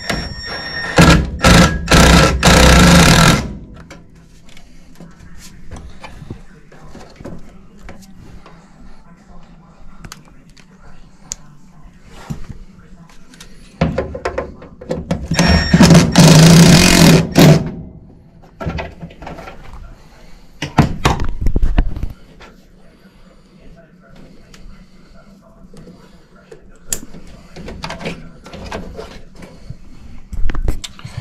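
Cordless drill-driver running in short runs of one to four seconds, three main runs and a brief one, driving in screws to mount a furnace's new inline inducer draft motor.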